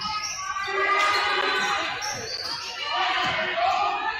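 A basketball dribbled on a hardwood gym floor, bouncing several times, with voices calling out across the hall.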